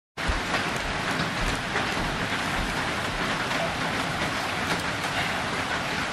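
Steady, dense hiss and patter of water, starting suddenly a moment in.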